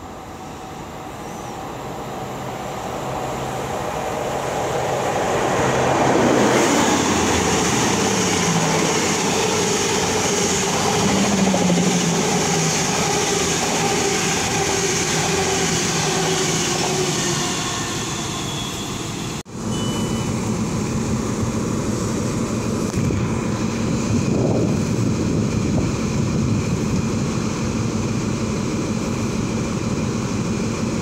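Class 43 HST diesel power car running into a station. Its engine and wheel noise build over the first several seconds, then hold loud with a high hiss and slowly falling engine notes as it slows. After a sudden cut, it stands at the platform with a steady engine hum.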